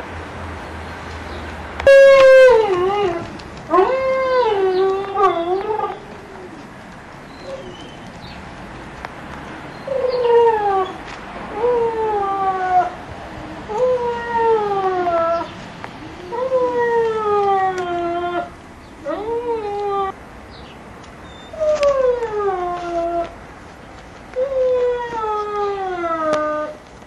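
Giant Schnauzer puppy crying: a series of drawn-out, whining cries, each falling in pitch, beginning about two seconds in, with a pause of a few seconds partway through.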